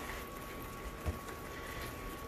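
Cream sauce simmering in a skillet as a wooden spatula stirs through it, faint, with one light knock of the spatula about a second in.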